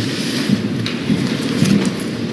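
A steady rushing hiss of background noise with no words.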